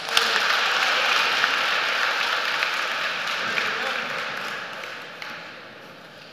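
Audience applauding, the clapping starting at once and dying away over about five seconds.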